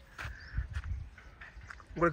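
Soft footsteps on dry, bare soil with low rumbles of the handheld phone being carried, a few muffled thuds in the first second.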